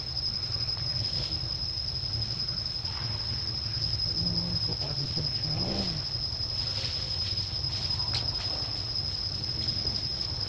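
Steady high-pitched insect drone in the forest, one unbroken tone, over a continuous low rumble; a faint rising-and-falling tone passes about halfway through.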